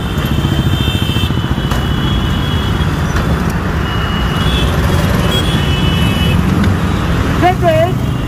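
Busy road traffic at a city intersection: engines of motorbikes, cars and a bus running close by in a steady, loud rumble.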